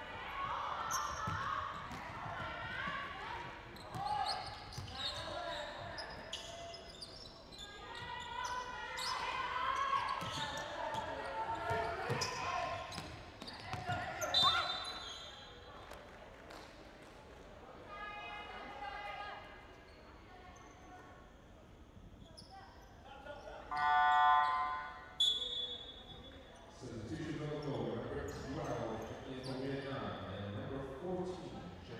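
Basketball bouncing on a hardwood court in a large echoing sports hall, with players' voices calling out and short sharp knocks of play. The sounds quieten for a while past the middle, then a loud pitched voice-like burst comes a little before the end.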